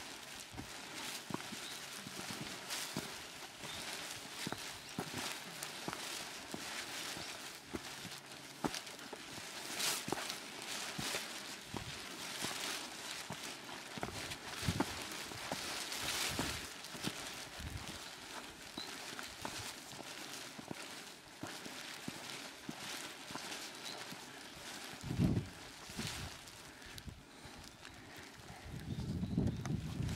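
Footsteps walking down a wet dirt and stone path: irregular crunching steps over a steady hiss, with a brief low thump about 25 seconds in and a low rumble near the end.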